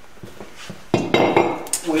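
A metal part set down or shifted on a workbench: a sudden clank with brief metallic ringing about a second in.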